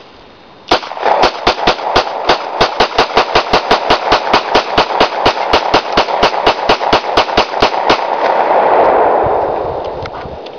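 A 9mm Glock 17 pistol fired rapidly, about thirty shots at roughly four a second, each a sharp crack. After the last shot a loud rushing noise swells and then fades.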